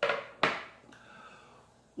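Two sharp knocks, one at the start and another about half a second in, as metal Mac Baren pipe-tobacco tins are handled and set on a table, followed by faint handling sounds.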